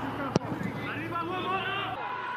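Football match sound from the pitch: voices calling across the field, with one sharp kick of the ball a little under half a second in.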